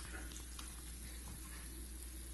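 Egg frying in a cast-iron pan: a steady, faint sizzle with a few small crackles, over a steady low hum.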